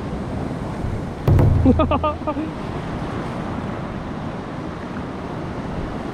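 Sea surf washing steadily against a rocky shore, with a short gust of wind buffeting the microphone a little over a second in.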